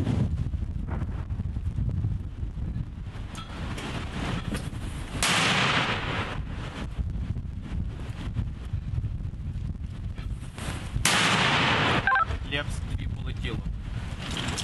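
Two mortar rounds fired about six seconds apart, each a sudden loud launch report followed by about a second of rushing echo, over a steady low rumble.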